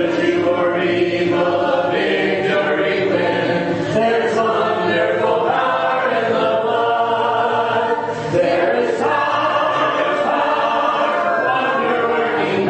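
A congregation singing a hymn a cappella, many unaccompanied voices holding and moving together from note to note, with a brief drop near the eight-second mark between phrases. It is the invitation hymn sung standing at the close of a sermon.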